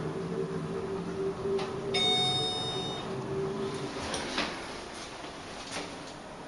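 Montgomery KONE elevator car's steady travel hum fading away as the car slows and stops, with a one-second electronic arrival chime about two seconds in. A couple of short clicks follow near the end, as the door gear readies to open.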